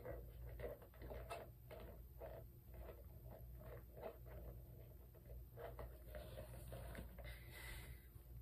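Faint rustling and scattered soft clicks of hands handling a boot, pulling it about below the frame.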